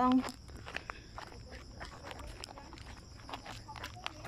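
Footsteps on a rocky hillside trail: irregular steps and scuffs while walking, over a faint steady high insect drone.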